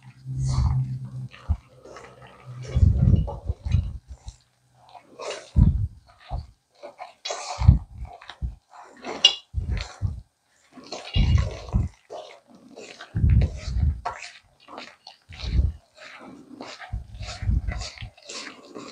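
A hand squishing and kneading thick, wet batter of rice flour, sour cream, eggs and melted butter in a stainless steel bowl: irregular squelches, each with a dull thump, every second or so.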